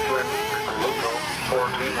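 Small .21 nitro engines of 1/8-scale RC buggies whining, their pitch rising and falling as the cars throttle on and off round the track, with a voice talking over them.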